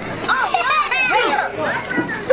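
Children's voices from the crowd, shouting and calling out in short high-pitched bursts over general crowd chatter.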